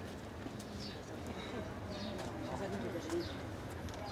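Outdoor ambience: indistinct voices in the background, with short bird chirps repeating every second or so and a few faint clicks.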